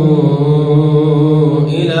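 A man reciting the Quran in a melodic, chanted style, drawing out one long held note that settles slightly lower at the start. About three-quarters of the way through it breaks off into the next phrase.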